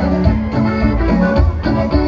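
Live band playing folk dance music over loudspeakers, with a steady, evenly repeating bass beat under sustained melody notes.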